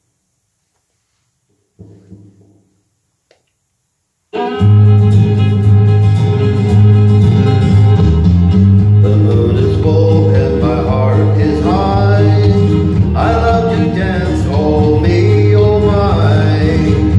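Near silence, then a country karaoke backing track starts abruptly about four seconds in, loud and steady, with a prominent bass line, guitar and a melody line on top.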